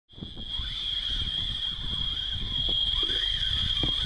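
Muffled water rumble with scattered knocks, as heard on an underwater action camera, under a steady high-pitched whine.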